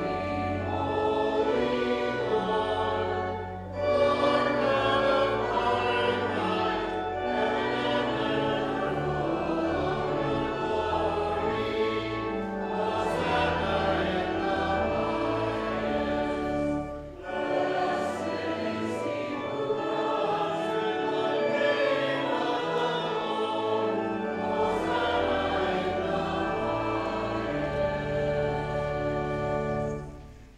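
A group of voices singing a hymn with organ accompaniment, the organ holding sustained low notes beneath the melody. The sound thins briefly between phrases, about four and seventeen seconds in.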